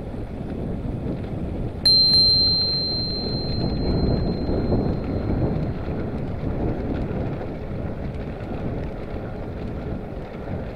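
Brass handlebar bicycle bell struck once about two seconds in, ringing on with one clear tone that fades over a few seconds. Under it, steady wind rumble on the microphone from the moving bike.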